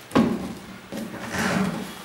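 A sharp knock just after the start, then scraping and rustling as a cardboard shoebox is slid and lifted off a wooden surface.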